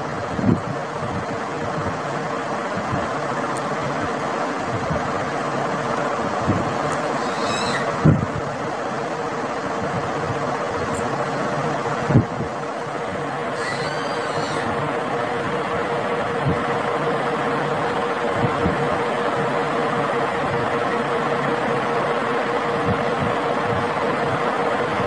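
A steady hum with one constant tone, as from an electric fan running, with a few soft knocks about half a second, eight and twelve seconds in. Faint brief high chirps come near eight and fourteen seconds.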